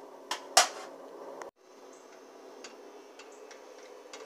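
Two sharp knocks of kitchenware being handled in the first second. After a brief break, a faint steady hum with a few light ticks.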